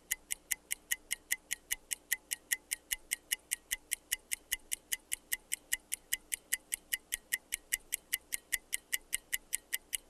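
Fast, evenly spaced clock ticking, about five sharp ticks a second, used as a countdown sound effect over a faint steady low tone.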